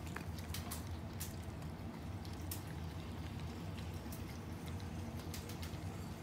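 A small dog eating from a ceramic bowl: irregular wet chewing and sharp clicks of food and teeth against the bowl, over a steady low hum.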